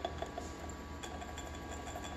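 Electric coffee grinder tapping against a small glass jar as dried tomato powder is poured from it: a few light clicks within the first half second, then only a faint low steady hum.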